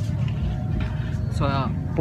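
Steady low rumble of street traffic, with a person's short vocal sound rising in pitch near the end.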